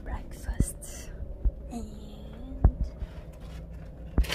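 A woman's voice, murmuring and whispering softly, with a short hum about two seconds in. A few soft thumps are heard through it.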